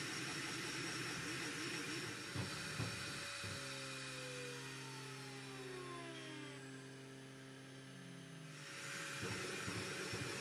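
A high-speed 3D printer running, with its stepper motors whining in wavering, shifting pitches over a steady fan hiss. About three and a half seconds in, several steady motor tones set in, with a few falling glides, then cut off suddenly near the end.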